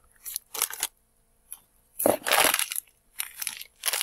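Plastic bags of dried herbs and roots crinkling and rustling as they are handled and drawn out of a cardboard box, in several short bursts, the loudest about two seconds in.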